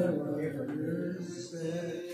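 Male voices chanting a marsiya, an unaccompanied Urdu elegy: a sung line fades out at the start, and fainter voices carry on quietly in a lull between phrases.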